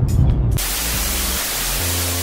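Low car cabin rumble for about half a second, then a sudden cut to loud television-static hiss with low bass notes of outro music under it.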